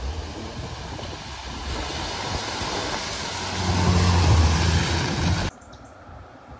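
A Mini hatchback driving through a flooded ford, its bow wave making a steady rush of splashing water over the engine's low hum. The sound grows louder as the car comes closer, then cuts off suddenly near the end.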